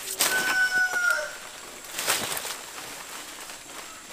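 Leaves and branches rustling and shaking as a man climbs a tree trunk, in two bouts: one at the start and one about two seconds in. Over the first rustle, a bird gives one drawn-out call, steady in pitch and dipping at the end.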